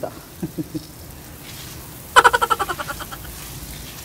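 Water from a garden hose spray nozzle hissing steadily onto plants and grass, with a short laugh near the start. About two seconds in, a loud, rapid chattering call of even pulses lasts about a second and fades out.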